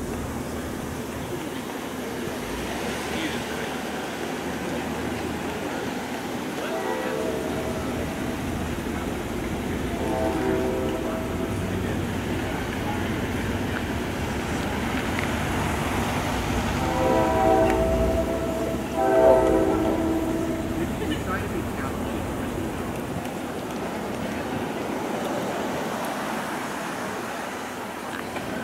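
A vehicle horn sounding several times over a steady outdoor rumble: short blasts about 7 and 10 seconds in, then two longer, louder blasts between about 17 and 20 seconds in.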